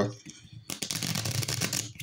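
A rapid run of small clicks and rustles, like something being handled close to the microphone. It starts just under a second in and lasts about a second.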